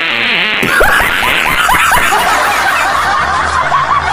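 High-pitched snickering laughter: a quick run of short squeaky laughs, several a second, that starts about a second in after a brief hiss.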